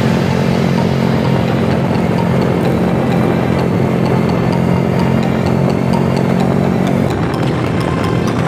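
Small underbone motorcycle engines running steadily at cruising speed, with wind and road rush on the microphone; the engine tone changes about seven seconds in.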